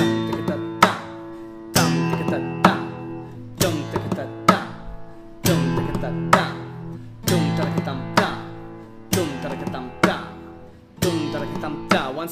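Takamine steel-string acoustic guitar played in a percussive strumming pattern in 6/8: strummed chords alternating with thumps on the guitar's body, a strong accent a little under once a second with lighter strokes between, the chords ringing on in between.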